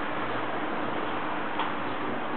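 Steady hiss of room noise with a single soft click about one and a half seconds in.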